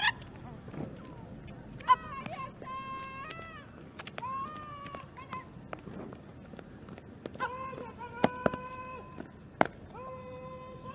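Several long, high calls from a voice, each held at a steady pitch and bending down at the end. A few sharp clicks sound among them, the loudest near the end.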